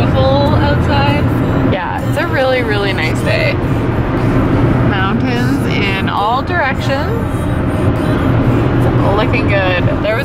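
Steady low road and engine drone inside a moving car's cabin, under a song with a singing voice that comes and goes.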